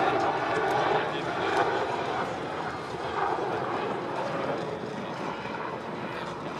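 Eurocopter Tiger attack helicopter flying a display pass, its rotor and turbine noise steady and slowly growing fainter, with people's voices over it.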